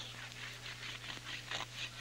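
Block of hard ski wax rubbed along the base of a cross-country ski: faint, repeated scraping strokes, over a steady low hum.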